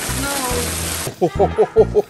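Hail falling hard on a car and paved driveway, a dense even hiss with a voice in it, over background music; about a second in the hail cuts off abruptly and quick vocal snippets follow over the music.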